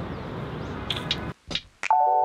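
Steady outdoor city background noise, which cuts off about a second in. A few sharp clicks follow, the start of a music track's percussion.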